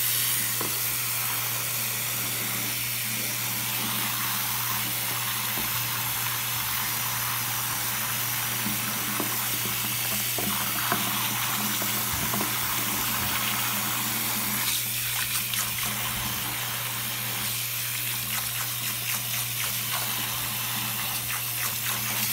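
Bathroom tap running steadily into a ceramic sink while a hand is rinsed under the stream, with some irregular splashing in the second half. A steady low hum sits beneath the water.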